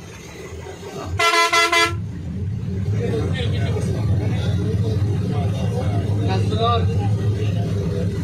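A vehicle horn honks once, a single pitched blast a little under a second long, about a second in. It is followed by a steady low vehicle rumble that builds from about two and a half seconds in, heard from inside the vehicle.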